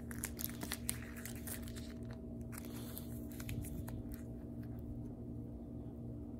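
Plastic card holders and sleeves clicking and crinkling as trading cards are handled and shuffled, with the clicks thicker in the first half, over a steady low hum.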